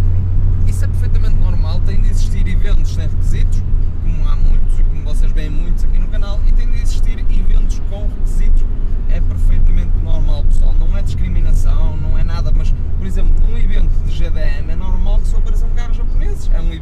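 Steady engine and road drone inside the cabin of a Nissan 100NX cruising on a motorway, under a man talking.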